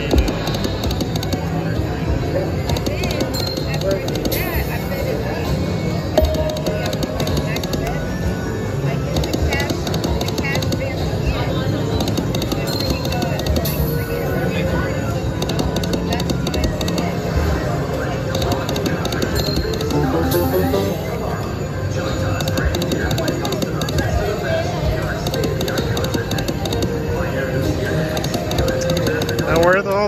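Video slot machine spinning its reels with electronic music and chimes, over a steady casino-floor din of other machines and voices.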